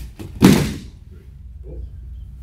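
A person thrown with a foot sweep (de ashi harai) landing on grappling mats: one heavy thud about half a second in, fading quickly.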